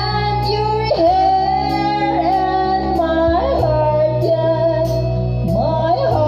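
A woman singing karaoke into a microphone over a backing track with a steady bass and beat, belting and holding long high notes that glide from one pitch to the next.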